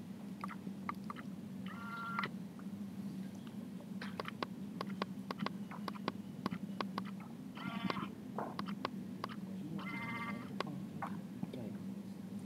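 Room sound in a lecture hall: a steady low hum with many scattered clicks and taps, and three brief high squeaks, near the start, about two-thirds through and near the end.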